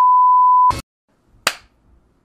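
A steady, high-pitched test-pattern beep of the kind played with TV colour bars, cut off suddenly under a second in. After a short silence, a single sharp click comes about a second and a half in.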